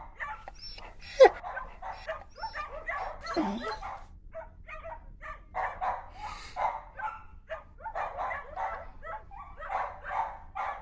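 Dogs barking and yipping in a quick string of short barks and whimpers, with one sharp, loudest yelp about a second in.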